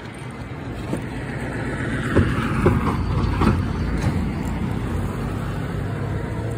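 A road vehicle passing, its noise swelling towards the middle and easing off, with a few sharp knocks in the middle.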